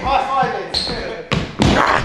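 A man's voice for the first second. Then heavy thuds and a loud rushing handling noise near the end as the camera is grabbed and covered.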